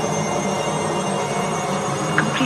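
Dark electronic music: a dense, steady drone of many sustained tones, with no beat.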